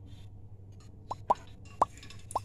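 Liquid dripping from a ladle into an aluminium pressure cooker, with three short plops in the second half, over a steady low hum.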